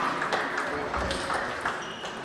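Table tennis ball struck back and forth in a rally, several sharp clicks off bats and table in quick succession.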